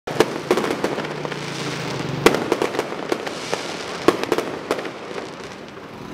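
Fireworks going off: a rapid run of sharp bangs and crackles over a continuous hiss, thinning out toward the end.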